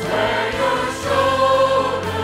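A choir singing slow, held chords.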